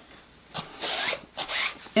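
Masking tape being pulled off the roll: a short rasping, zipper-like noise in two or three pulls, starting about half a second in.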